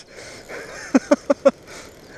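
A man laughing in four short, quick bursts about a second in, after a soft breath.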